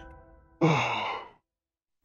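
A cartoon character's voiced sigh of relief: one breathy exhale, falling in pitch and under a second long, about half a second in, as the last held music notes fade away.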